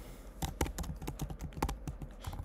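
Typing on a computer keyboard: a quick, irregular run of key clicks that starts about half a second in, as a short line of code is typed.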